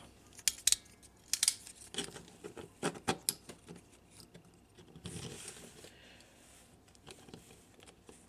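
Sharp plastic clicks and knocks of a Transformers Power of the Primes Swoop action figure being handled, its parts snapped and adjusted into place, most of them in the first three seconds. A brief soft rustle comes about five seconds in.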